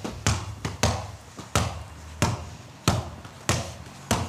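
A basketball bouncing repeatedly on paving stones, a sharp thud every half second or so.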